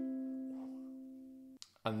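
Flight Fireball ukulele: the last plucked notes of a fingerstyle arpeggio ring on together and fade slowly, then cut off suddenly about three-quarters of the way through.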